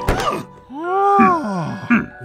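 A cartoon character's wordless, worried moaning: two short sounds that each rise and fall in pitch, over background music. There is a sharp hit right at the start.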